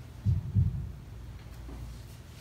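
Two dull, low thumps about a third of a second apart, over a steady low hum.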